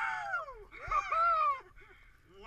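Several men whooping and hollering: a long drawn-out cry that falls away in pitch, then a second, louder burst of overlapping yells about a second in, dying off near the end.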